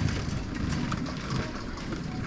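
Steady low rumble with a few faint rattles and ticks, with no speech.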